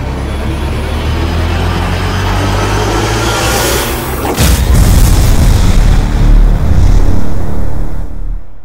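Cinematic logo-intro sound design: a low drone building under a rising whoosh, then a heavy boom hit a little over four seconds in, followed by a deep rumble and music.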